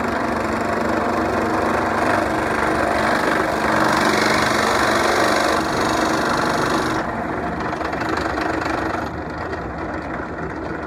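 Benchtop drill press motor running while a spade bit bores a hole into a wooden board. The rough cutting noise is loudest in the middle and drops off about seven seconds in, leaving the motor running more quietly near the end.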